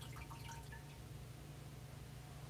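Water trickling and dripping into a metal chalice as it is purified after communion: a few short ringing drip notes in the first second.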